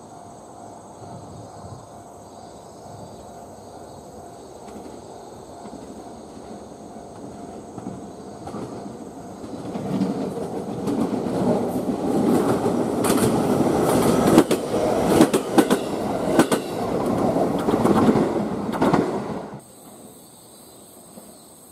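Electric commuter train running over a railway turnout. It grows louder as it draws near, and from about halfway in the wheels clatter in quick clicks over the switch and rail joints. The sound cuts off suddenly just before the end.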